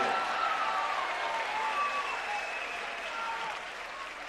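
Audience applauding, the applause slowly dying away.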